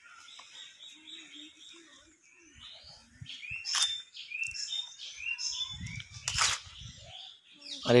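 Birds chirping: a quick run of short repeated high chirps, then a series of short falling notes. A single sharp click about six seconds in.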